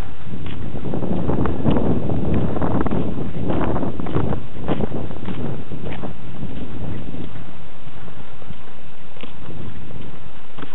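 Footsteps crunching on a snow-covered road at a walking pace, about two steps a second, with wind buffeting the microphone, strongest in the first half.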